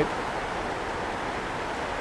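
Steady rushing noise of a storm-swollen gully in full flood, even and unchanging.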